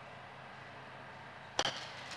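A golf club strikes a ball off an indoor hitting mat: one sharp crack about three-quarters of the way through, after a quiet stretch with a faint low hum.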